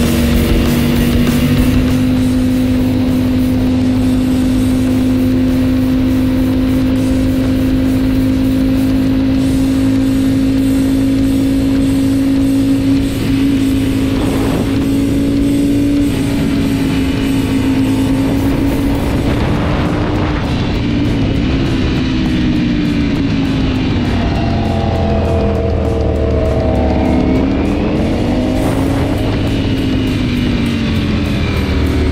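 Ducati V4 Speciale's V4 engine running at steady high revs under way, its note creeping slowly higher, with constant wind rush. In the last ten seconds the pitch dips and climbs again several times as the throttle is rolled off and on.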